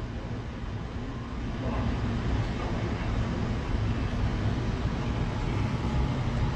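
Steady low rumbling background noise with a faint low hum, getting slightly louder about two seconds in.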